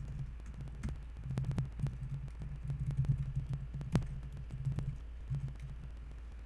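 Typing on a computer keyboard: irregular key clicks with dull low thuds, over a steady low hum.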